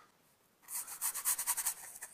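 Bristle brush scrubbing oil paint onto a stretched canvas: a quick run of short, dry, scratchy strokes that begins about half a second in.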